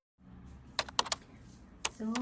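Faint room noise with four sharp clicks: three in quick succession about a second in and a single one near the end.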